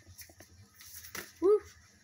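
A deck of oracle cards shuffled by hand, giving a few soft ticks and one sharper click. About a second and a half in, a woman gives a short 'woo' that is the loudest sound.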